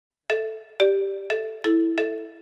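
A programme's opening jingle: a short melody of bell-like struck notes, starting about a quarter second in, with four notes about half a second apart, each ringing and fading.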